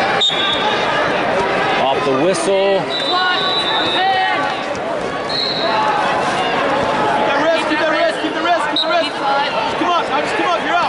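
Arena crowd and coaches yelling and cheering through a high school wrestling bout, many voices overlapping, with a few short high squeaks mixed in.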